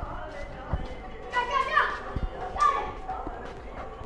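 Brief high-pitched voices calling out twice, with a couple of dull footstep thumps.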